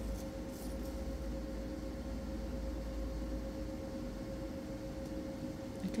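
A steady low hum with one constant tone running throughout, with a few faint light scrapes near the start as a palette knife works the sculpture paste.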